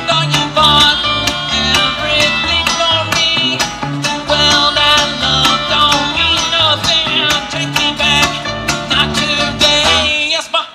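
Live bluegrass band playing: mandolin, banjo and acoustic guitar picking quick notes over a steady upright bass line.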